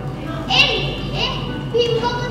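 A child's voice speaking stage dialogue in short, loud, high-pitched phrases, one starting about half a second in and another near the end.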